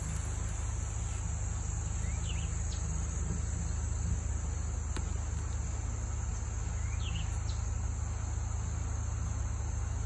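A steady high-pitched chorus of insects over the low, even rumble of a pickup truck driving slowly along a wooded trail. A few faint short chirps come through about two and a half and seven seconds in.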